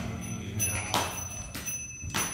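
Small brass hand cymbals (kartals) struck in a slow beat, a few strikes, each ringing on, accompanying a chanted Sanskrit verse.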